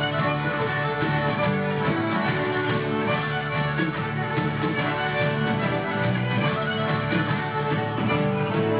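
Live Celtic folk band playing an Irish jig: fiddle and accordion over strummed acoustic guitar and drums, steady and full throughout.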